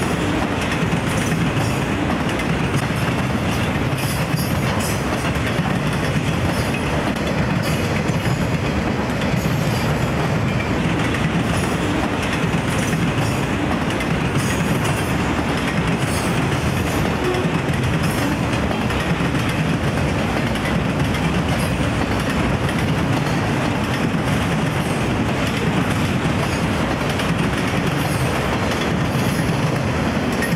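Freight train cars, autoracks and boxcars, rolling past: a steady noise of steel wheels on rail with frequent light clicks.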